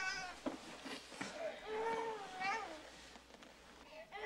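Newborn baby crying in short wails that bend up and down in pitch.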